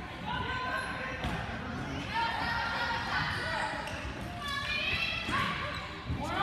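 Voices calling out and shouting in a reverberant gymnasium during a basketball game, with a basketball bouncing on the hardwood court.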